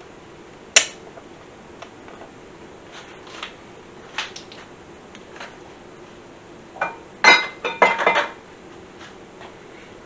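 Kitchenware being handled on a countertop: a sharp knock about a second in, a few faint ticks, then a quick run of clinks with a short ring to them around seven to eight seconds in.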